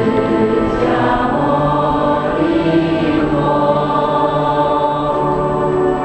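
A choir singing a slow Buddhist hymn, its notes held long and joined without pause.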